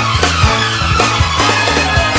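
Music with a steady beat and a sustained bass line.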